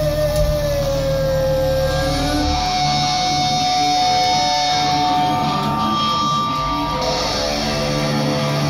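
Live heavy rock band: an electric guitar plays a lead line of long, held notes with vibrato that step upward in pitch. The bass and drums thin out about a third of the way in and come back in near the end.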